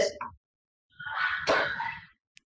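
A woman's puckered-lip mouth noise imitating her cat coming up for a kiss. It starts about a second in and lasts about a second, with a sharp smack in the middle.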